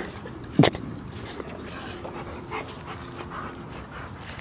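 A dog panting, with a faint whimper near the middle, and a single sharp knock about half a second in.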